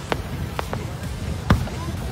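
Fireworks going off: a few sharp pops, the loudest a single report about one and a half seconds in, over a low steady rumble.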